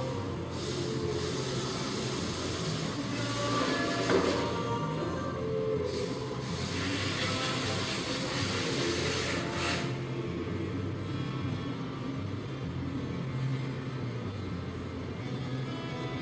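Background music with low bass notes, overlaid by a loud hiss that comes and goes and cuts off suddenly about ten seconds in.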